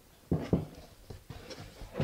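Cardboard shipping box being opened by hand: two loud thumps of the flaps shortly after the start, then lighter knocks and scuffs of cardboard.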